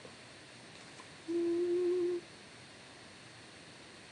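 A woman humming one steady, slightly wavering note for about a second, just over a second in.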